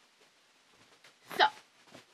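Quiet room tone, then one short, loud vocal sound from a girl about a second and a half in, heard as the word "So".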